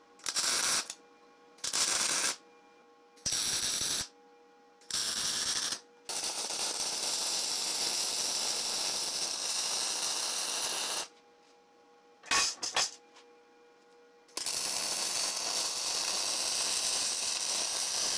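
Electric arc welding on steel: four short tack welds, then a bead of about five seconds, two brief strikes, and a second bead of about four seconds, each a steady crackling hiss with pauses between.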